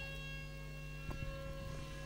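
A faint, steady tone of several pitches, held unchanged over a low constant hum.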